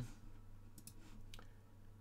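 A few faint computer mouse clicks, bunched about a second in, over a low steady hum.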